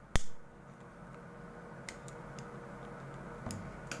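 A disposable lighter struck with one sharp click just after the start, then a faint steady hiss as the flame melts the end of a polypropylene cord to seal it, with a few faint ticks.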